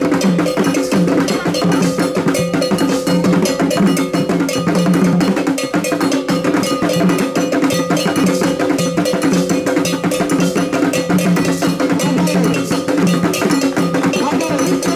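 Ghanaian traditional drum ensemble playing a fast, dense rhythm on several hand drums, with a metal bell ringing a steady pattern over the drums.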